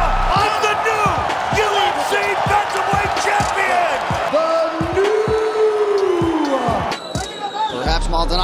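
Arena crowd cheering under background music with a steady bass beat. A commentator exclaims "Oh" near the start.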